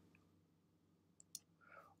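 Near silence, broken a little after halfway by two faint computer mouse clicks close together.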